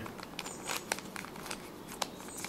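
Faint plastic clicking and scraping of a Fisher Cube's layers being turned by hand, several quick turns in a row.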